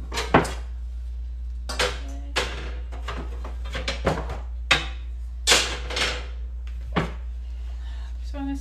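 Knocks and clatter of a DTG printer's platen board being taken off and handled, about eight separate bumps, over a steady low hum.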